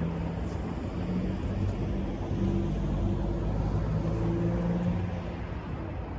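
A motor vehicle's engine running nearby, a low hum whose pitch steps up and down and grows louder in the middle before easing off.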